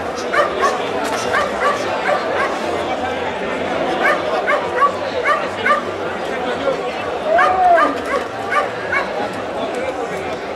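Crowd of spectators chattering, with a dog yipping in quick runs of short barks, three bursts spread through the clip. Near the middle someone gives one rising-and-falling call.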